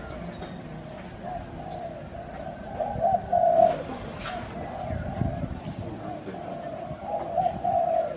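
Birds calling in the background: a run of repeated, even mid-pitched notes, louder about three seconds in and again near the end. Two sharp clicks come around the middle.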